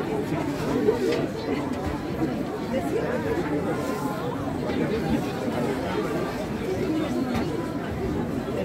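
Steady chatter of several people talking at once, with no single voice standing out.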